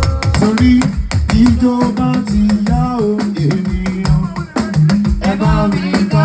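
Live Yoruba party band music led by a talking drum held under the arm and struck rapidly with a curved stick, its low notes sliding up and down over other instruments.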